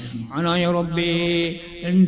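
A man chanting a dua (Islamic supplication) in long, held melodic notes, breaking off briefly shortly before the end and then picking up again.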